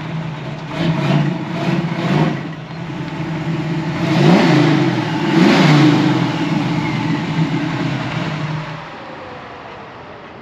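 Chevrolet Nova's engine running as the car drives up, with three quick blips of the throttle, then two longer revs that rise and fall. It settles to a steady idle and cuts off about nine seconds in.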